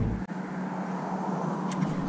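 Steady outdoor background noise, an even hiss with a faint low hum, with one faint click about a quarter second in.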